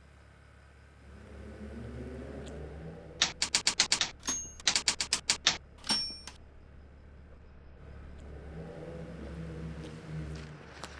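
Typewriter keys clacking in two quick runs of about a second each, each run ending in a short ding, as the title is typed out.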